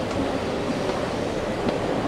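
Escalator running, a steady mechanical noise.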